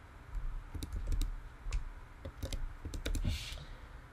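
Computer keyboard typing: a run of irregularly spaced key clicks as digits of a phone number are keyed in.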